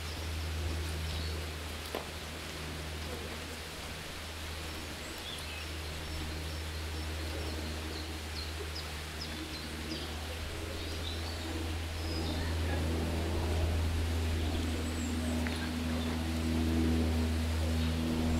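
Woodland outdoor ambience: a steady low rumble with faint bird chirps scattered through the middle, and a faint steady hum coming in over the last few seconds.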